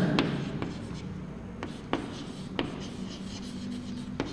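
Chalk writing on a blackboard: a few sharp taps and light scratches as letters are written.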